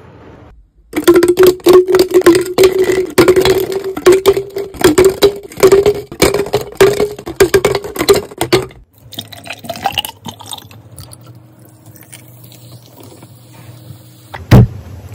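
Liquid poured into a glass with a steady pouring tone that rises slightly in pitch as the glass fills, over many sharp clicks from ice. The pour runs from about a second in until about nine seconds in, and after that only quieter small sounds remain.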